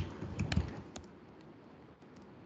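Typing on a computer keyboard: a handful of quick key clicks, mostly in the first second, then quieter.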